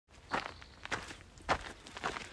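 Hiker's footsteps on a dirt mountain trail, three steps at a steady walking pace.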